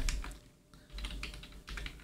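Typing on a computer keyboard: a quick run of key clicks starting about a second in as a word is typed into a search bar.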